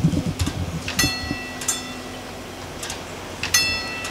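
Level crossing warning bell struck repeatedly, single ringing strokes about a second or more apart, with a steady low motor hum as the barrier boom lowers, stopping shortly before the end; some low thumps in the first half second.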